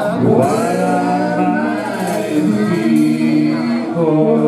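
Live band playing a song: a man singing over electric guitar, lap steel guitar and drums.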